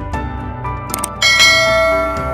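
Intro music with a bright bell-like chime struck a little over a second in, ringing out and slowly fading over sustained tones.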